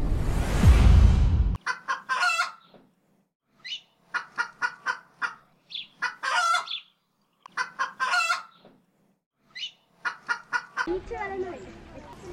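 A short music sting ends about a second and a half in. Then a chicken calls in four bouts, each a quick run of short clucks ending in a longer, louder note, with complete silence between the bouts. Outdoor background noise starts shortly before the end.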